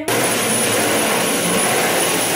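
Vacuum cleaner switched on and running steadily: a loud, even rush of air with a thin high-pitched whine.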